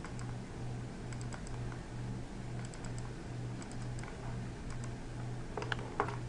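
Computer mouse and keyboard clicks, scattered and light, with a louder cluster of clicks near the end, over a low hum that swells and fades about twice a second.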